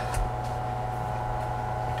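A short click right at the start, at the moment the jet pump shuts off at 40 psi, over a steady low hum.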